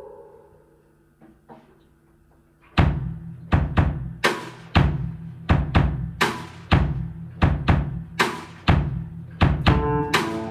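A drum kit starting a steady beat about three seconds in, after a near-quiet pause, with deep drum hits coming about twice a second.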